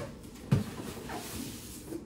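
Cardboard slow-cooker box being handled and unpacked: one dull thump about half a second in, then soft rustling and scraping of cardboard as the box is turned over and lifted off the cooker.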